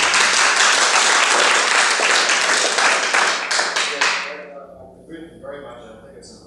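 Audience applauding, loud and steady at first, then dying away with a few last scattered claps about four seconds in.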